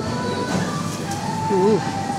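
Supermarket background sound: in-store music playing under indistinct voices.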